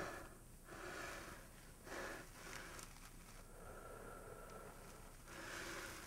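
Faint, long breaths blown into a smouldering tinder bundle, several in a row, to coax the ember into flame.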